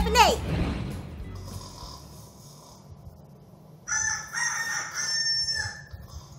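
The tail of the cheerful intro music fades out over the first second or two. Then, about four seconds in, a rooster crows once for about two seconds.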